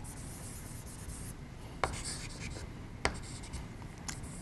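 Chalk scratching faintly on a chalkboard as a diagram is drawn, with two short, sharp taps a little over a second apart.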